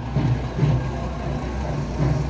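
A vehicle engine idling with a steady low hum, under faint distant voices.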